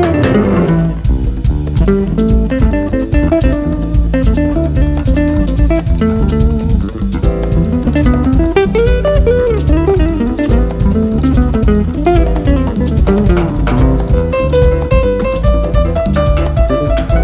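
Jazz band instrumental: guitar over bass and drum kit, with the drums and bass kicking in right at the start and keeping a steady busy groove.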